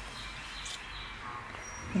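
A pause with low, steady background hiss and one faint, brief high chirp about two-thirds of a second in.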